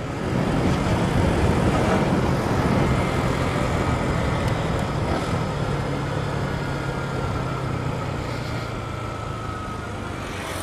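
Motorcycle engine running at road speed under heavy wind noise on the bike-mounted microphone, easing off so the sound grows gradually quieter over the second half as the bike slows.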